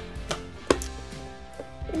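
Background music with held notes, and two sharp taps less than half a second apart as a cardboard toy box and playset are handled on the table.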